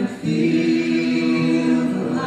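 A group of voices singing a slow closing song together, holding long notes, with a brief break just after the start.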